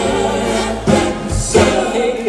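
A four-man male vocal group singing in harmony with a live band backing them.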